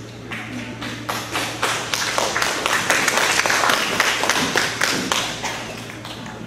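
Audience applauding: the clapping builds about a second in and fades out near the end, over a steady low hum.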